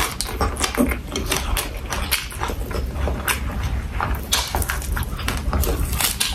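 Close-miked chewing and crunching of crisp fried quail, with wet mouth smacks coming as a dense, irregular run of crackly clicks.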